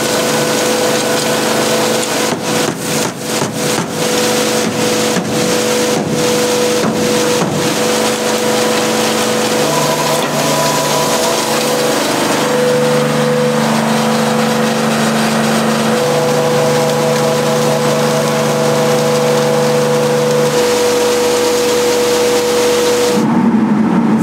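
An engine running steadily, its tone shifting in pitch and level several times. There is a run of sharp clicks and knocks in the first several seconds.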